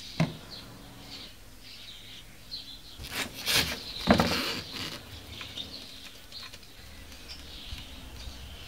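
Birds chirping throughout. About three seconds in, and again a second later, a tyre-fitting lever tool scrapes and clatters against the steel wheel rim as it is worked to seat the new valve stem.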